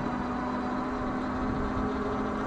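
Rear hub motor of a fat-tire electric bike, driven by an upgraded 40 A controller, whining steadily under hard load while climbing a hill. The whine is one held tone over a low rushing noise.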